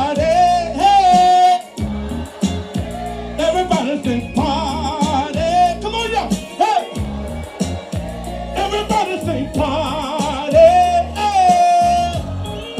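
A male singer singing a southern soul song live over backing music with bass and drums, holding notes with vibrato about a second in and again near the end.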